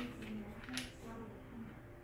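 Faint, low murmur of a man's voice, with no clear mechanical clicks.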